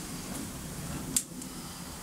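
Quiet background hiss with a single short, sharp click a little past halfway.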